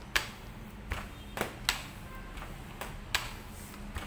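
Rolling pin working a sheet of bread dough flat on a stainless steel worktable to press the air out, with a handful of sharp, irregular clicks and knocks.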